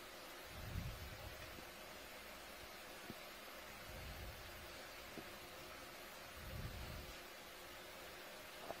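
Faint steady hiss of an open communications audio line, with a few soft low thumps.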